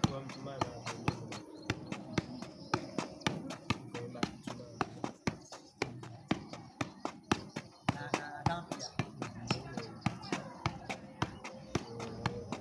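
A football being juggled on the foot: a quick run of sharp taps, about three to four a second, as the ball is kicked up again and again.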